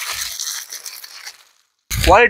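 Crinkling rustle of a garment's plastic packet being handled. It fades away about a second and a half in and cuts to silence just before the end.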